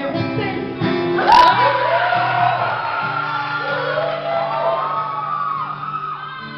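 Live amateur band music: a woman singing long, held notes into a handheld microphone over guitar accompaniment. A single sharp hit sounds about a second in.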